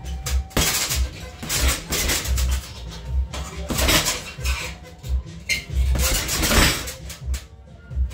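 Music with a pulsing bass beat.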